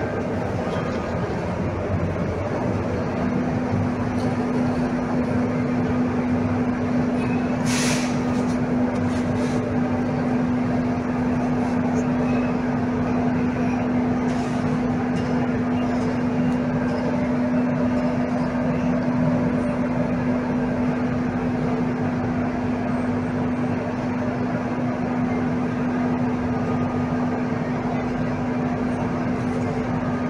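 A steady mechanical drone with a constant low hum, with one brief click about eight seconds in.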